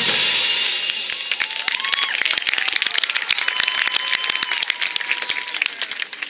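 A marching band's last chord dies away at the very start, then the audience breaks into dense applause with scattered cheers, one long held cheer about halfway through.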